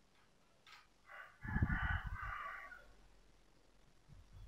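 A single faint animal call, about a second and a half long, heard about a second in.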